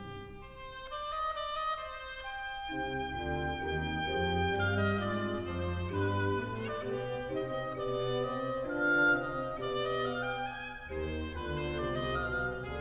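Baroque orchestral passage with no voices: a solo oboe melody over strings and continuo. It begins thin and fills out into the full ensemble about three seconds in.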